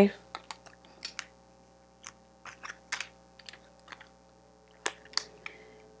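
Oracle cards being handled and shuffled by hand: a string of irregular, light clicks and flicks of card stock.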